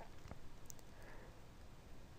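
Near silence: faint room tone with a couple of faint, short ticks.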